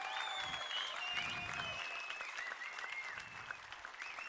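Audience applauding steadily, easing off a little toward the end.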